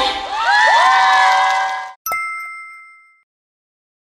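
Audience cheering and screaming in high rising voices as the song ends, cut off suddenly about two seconds in. A single bright electronic chime follows and rings out for about a second before silence.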